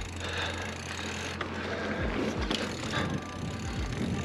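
Ragley Big Al hardtail mountain bike ridden on a dirt trail: tyres rolling over dirt and a few sharp knocks from the bike over bumps, under background music with a steady low drone.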